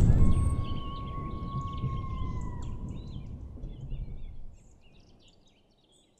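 Logo sting sound design with outdoor bird chirps: a low rumble dying away over the first second, a long steady whistle-like tone that dips and stops about two and a half seconds in, and scattered high bird chirps that end about four and a half seconds in.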